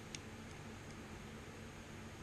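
Quiet room tone: a steady faint hiss, with one small click just after the start.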